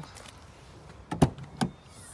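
Chevrolet Captiva tailgate latch clicking open: a sharp click about a second in, then a smaller click shortly after.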